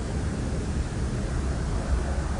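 A steady, deep rumbling noise with no distinct events in it.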